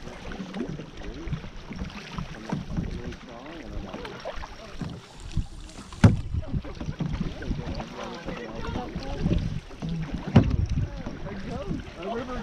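Canoe paddling on a river: water splashing and lapping close by as paddles stroke through it, with two sharp knocks about halfway through and again near the end. Distant voices talk faintly underneath.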